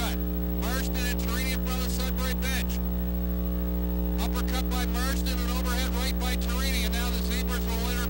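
Steady electrical mains hum with many overtones on the audio track, under a voice talking or calling in stretches, with a pause of about a second and a half in the middle.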